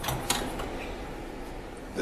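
A few faint clicks near the start as small metal vacuum-pump parts are handled on a workbench, over low steady room tone.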